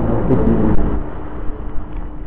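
A man's voice finishing a word in the first moment, then low rumbling background noise with a steady hum carrying on underneath.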